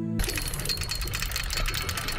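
A soft held music pad cuts off a moment in. It is replaced by a fast, dense mechanical clattering with a low rumble under it, a sound-design sting for a TV production ident.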